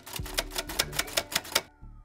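Typewriter sound effect: rapid, evenly spaced keystroke clicks, about eight a second, stopping about a second and a half in, matching on-screen text being typed out letter by letter.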